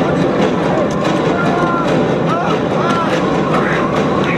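Loud, steady roar of wind and aircraft engine noise inside a plane's cabin in flight, with a few short, wavering high tones over it.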